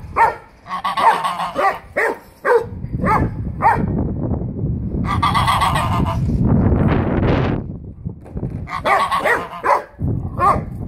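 White domestic geese honking in three clusters of short, repeated calls, with a longer hissing noise in the middle. This is defensive alarm calling at a dog lunging at them through the fence.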